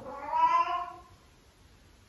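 A female cat in heat yowling: one drawn-out call of about a second that then stops.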